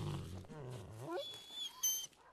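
A large dog whining in low, throaty sounds, with a rising whine about a second in and a thin high whine near the end.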